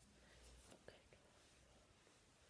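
Near silence with faint whispering and a few soft clicks.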